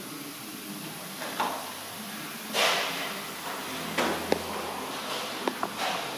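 A few scattered knocks and rustles over a steady low background, the loudest a short rustle about two and a half seconds in.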